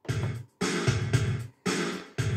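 Yamaha PSR-520 keyboard's built-in '16 Beat Pop' rhythm style playing a drum-machine pop beat, starting suddenly.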